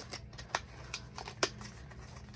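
Small cardboard Sonny Angel blind box being pried open by hand, its flaps glued tight: light rustling of card with a few sharp clicks, the two loudest about half a second and a second and a half in.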